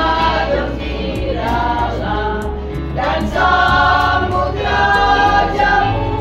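A women's vocal group singing a Christian song together in held, drawn-out phrases, over an instrumental backing with a steady bass and a light beat.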